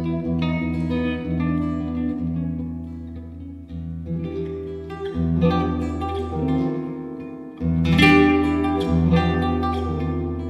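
Nylon-string Spanish guitar playing a solo of plucked melody notes and chords. After a brief lull near the end, a loud full chord rings out.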